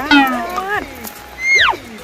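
Young Asian elephant calf squeaking: a wavering high-pitched call at the start, then a sharper squeak that rises and drops steeply about one and a half seconds in.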